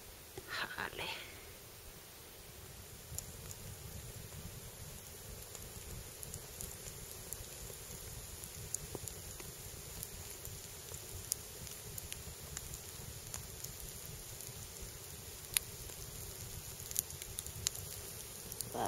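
Wood campfire crackling, with sharp pops scattered through it over a low, steady rumble.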